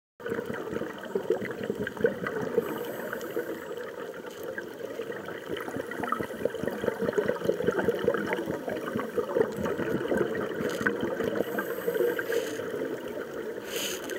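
Underwater sound picked up by a submerged camera: a steady, dense crackle of tiny clicks, typical of snapping shrimp on a coral reef.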